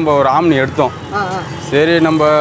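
Speech: a man talking close to the microphone.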